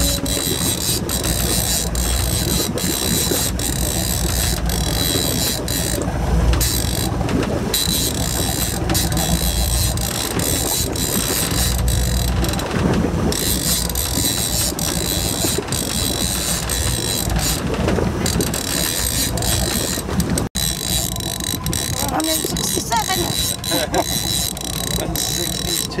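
Level-wind trolling reel being cranked against a heavy fish, its mechanism clicking about twice a second, over a steady low rumble and wind.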